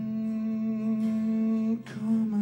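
A man's voice holding one long sung note over acoustic guitar, with a slight waver; near the end it breaks off on a breath and the next note begins.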